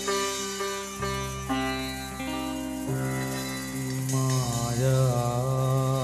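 Live band music: held melody notes over a steady bass line. From about four seconds in, a lead line slides up and wavers with vibrato.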